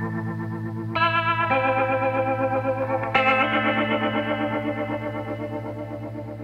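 Music: electric guitar chords with a wavering effect on them, a new chord struck about a second in and another about three seconds in, each left to ring and slowly fade.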